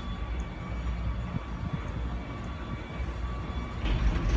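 Steady low rumble of a moving vehicle heard from inside its cabin, with a faint steady whine above it.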